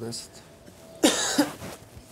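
A person coughing: a loud, rough double cough about a second in, fading within half a second.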